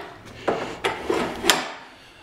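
Metal handle of a convertible hand truck knocking in its frame as it is handled, with no pin to hold it: three sharp knocks in the first second and a half, each with a short ring.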